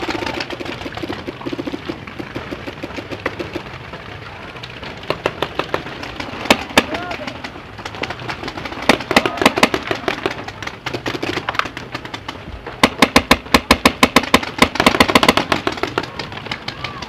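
Paintball markers firing in rapid strings of shots, with the heaviest volley near the end at about nine shots a second.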